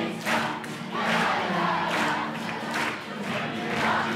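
A large crowd of young people singing and shouting together, with strong accents in a steady rhythm, as if chanting along with a dance.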